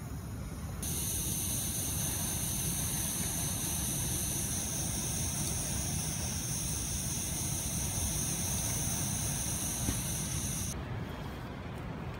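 Pressurised burner of an MSR multi-fuel stove running under a billy can that is not yet boiling, a steady hiss that starts about a second in and stops shortly before the end. Low wind rumble on the microphone lies beneath it.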